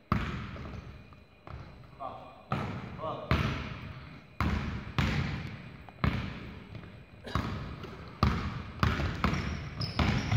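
A basketball is dribbled on a hardwood gym floor in a steady run of bounces, a little more than one a second. Each bounce echoes in the large gym.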